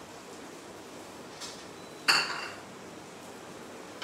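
A single sharp clink of kitchenware, a piece of dishware or a utensil set down on the counter, ringing briefly about two seconds in, after a fainter knock, over a steady low hiss.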